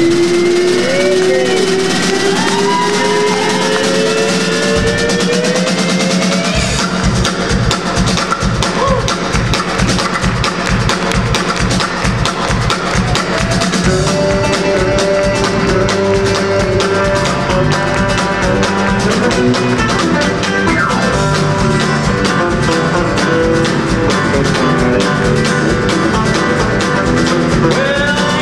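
Live country band playing with guitars to the fore; the drum kit and bass come in with a steady beat about six and a half seconds in.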